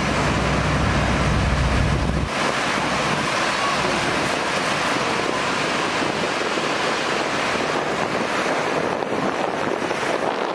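Hovercraft running close by on its pad: a steady, loud rushing noise from its fans and propellers, with wind on the microphone. A heavy low rumble cuts off about two seconds in.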